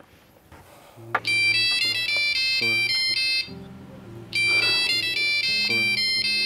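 Mobile phone ringtone: a high-pitched electronic tune that starts about a second in, plays its phrase, pauses briefly and plays it again.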